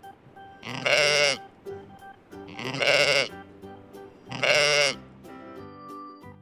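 A sheep bleating three times, about two seconds apart, over soft background music.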